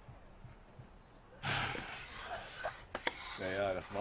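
A plastic ice scraper rasping frost off an aircraft windshield, starting suddenly about a second and a half in, with a few sharp clicks of the blade on the glass. A man's voice starts just before the end.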